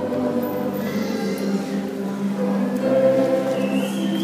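Many voices singing a hymn together, holding long sustained notes.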